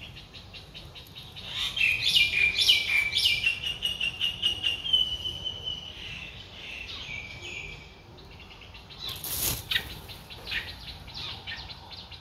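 Streak-eared bulbul nestlings begging with rapid, high chittering calls while being fed, loudest from about one and a half to six seconds in. About nine and a half seconds in comes a short burst of wingbeats as the adult bulbul flies off the nest, with fainter begging calls after it.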